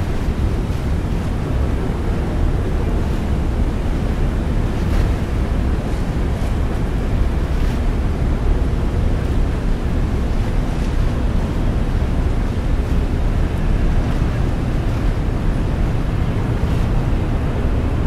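Wind blowing across the microphone as a steady low rumble, over choppy river water slapping against a pier, with a few faint splashes.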